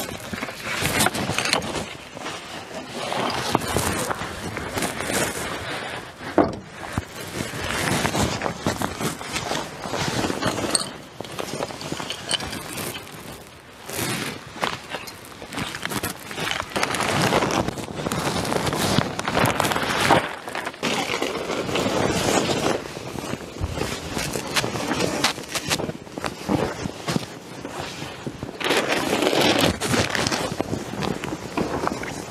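Footsteps on dry leaf litter and dirt, mixed with irregular rustling and scraping as gear is handled. Near the end a plastic bag rustles.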